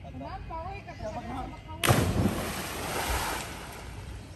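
A person plunging into a river from an overhanging mangrove tree: a sudden loud splash about two seconds in that dies away over about a second and a half, after voices calling.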